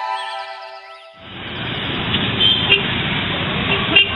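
Background music fades out in the first second, then dense rush-hour street traffic takes over: engines, motorbikes and a crowd, with short horn toots cutting through the din.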